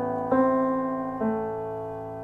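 Piano notes played one at a time over a held low note, the start of a short melody. A new note comes in about a third of a second in and another just over a second in, each ringing on and slowly fading.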